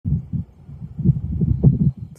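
Wind buffeting the microphone: irregular low rumbling thumps, several a second, with no higher-pitched content.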